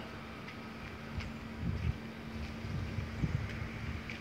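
Quiet outdoor background: low, irregular rumbling with a faint steady hum underneath.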